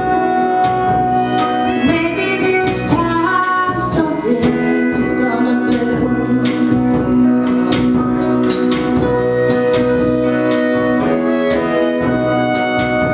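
Live folk-country band playing: acoustic guitar, piano, horns and drums together with held notes over a steady beat.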